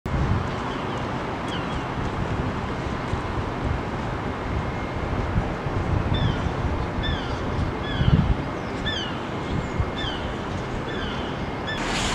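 Outdoor urban background with wind buffeting the microphone, a steady low rumble throughout. A bird repeats short falling chirps, a couple early on and then regularly about once every 0.7 seconds through the second half.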